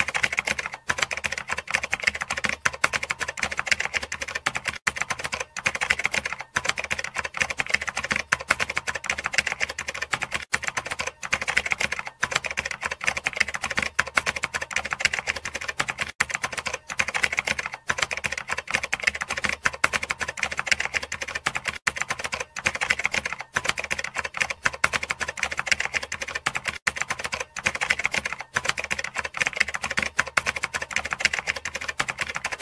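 Keyboard typing sound effect: a rapid, unbroken clatter of key clicks laid under typed-out on-screen text.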